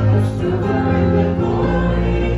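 A woman and a man singing a gospel hymn together into handheld microphones, with sustained, changing notes.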